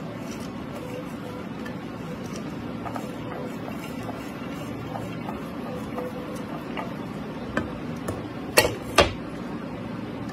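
Sliced red chilies scraped and tipped from a plate onto noodles in a metal tray, with light clicks over a steady background hum. Near the end come two sharp knocks of dishware against the metal tray, about half a second apart.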